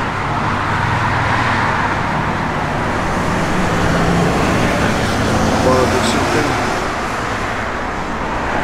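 Steady road traffic noise: a rush of passing vehicles over a low engine hum, swelling in the first second and easing slightly near the end.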